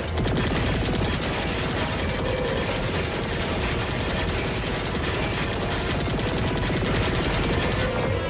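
Rapid-fire cartoon weapon sound effect, a fast unbroken stream of shots, over action music.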